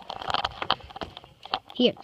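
Soft rustling and scattered clicks of plush toys being handled against the phone's microphone, followed by a child's voice near the end.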